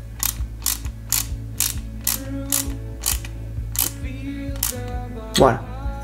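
Ratcheting screwdriver driving a small screw into a die-cast metal model chassis, its ratchet clicking about twice a second as the handle is turned back and forth.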